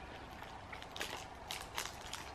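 A few faint, scattered crackles as a crumbly, powdery peanut candy is bitten into while still partly in its wrapper.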